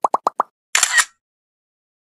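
Editing sound effects over a title card: a quick run of about six bubbly plops, each sliding up in pitch, then a short sparkly swish just under a second in.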